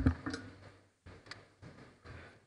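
Handling noise on a live microphone: a thump right at the start, then a few faint clicks and taps.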